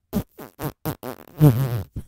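A person making short voiced mouth noises in quick succession, then a longer, louder, low one about a second and a half in, before the sound cuts off.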